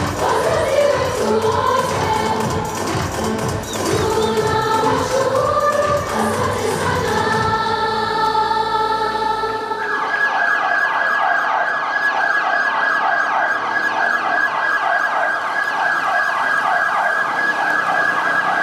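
Music with singing and a beat, passing through a few seconds of held tones into a siren yelping in a fast, even rhythm from about ten seconds in.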